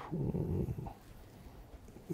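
A man's brief, low, throaty hesitation sound, like a growl-like murmur, in the first second, followed by quiet studio room tone.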